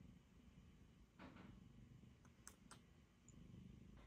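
Near silence: room tone, with a soft rustle about a second in and a few faint clicks a little later.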